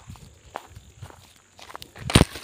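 Footsteps on dry ground strewn with twigs and dry grass: a string of soft, irregular steps with light crackles.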